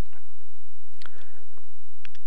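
A few faint clicks, the clearest about a second in: computer mouse clicks as a tool preset is applied in the CAM software.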